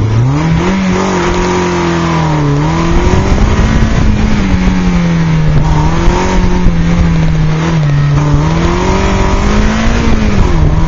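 Toyota MR2 Spyder's 1.8-litre four-cylinder engine pulling hard on an autocross run, heard from the open-top cabin. The revs climb steeply in the first second, then stay high, dipping and rising again a few times.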